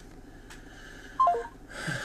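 An electronic alert tone: three quick beeps falling in pitch, a little over a second in, like a phone notification chime.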